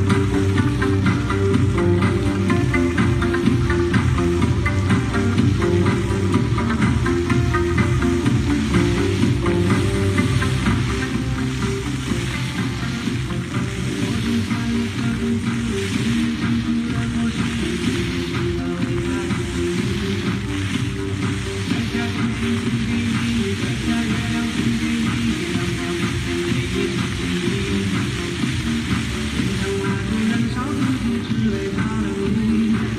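Background music with sustained notes over the steady hiss of water jets from a dry floor fountain splashing down.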